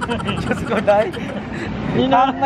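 A woman's excited voice over steady road-traffic noise.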